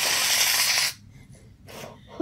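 Aerosol can of Reddi-wip whipped cream spraying into a mouth: a rough hiss that cuts off sharply just under a second in.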